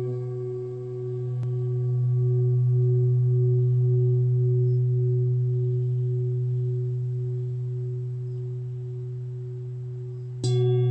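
Large brass singing bowl, a 'Schumann 1' frequency bowl, ringing on after being struck: one low steady note with a stack of higher overtones, one of which pulses in a slow wobble. The ring swells a little early on, then fades slowly.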